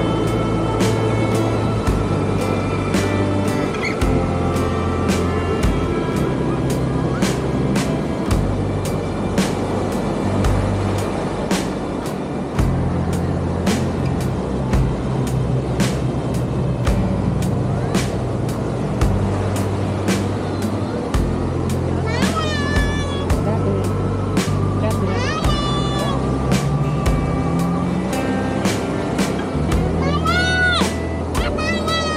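Rock background music with a steady drum beat and a bass line.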